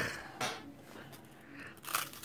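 A laugh trailing off, then quiet until a short crisp crunch near the end as a layered hazelnut wafer bar is bitten into.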